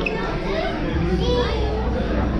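Background voices of people talking, with children's high-pitched voices calling out.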